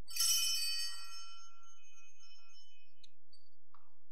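Altar bells rung at the priest's communion: a few quick strikes close together, then a bright, high ringing that fades out over about a second and a half.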